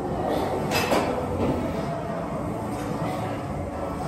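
Lying leg-curl machine being worked through a rep, its weight stack giving one clink about a second in, over steady gym background noise with indistinct voices.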